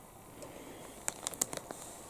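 Faint crackle of a clear plastic bag and a plastic model-kit part being handled, with a quick run of light clicks from about a second in.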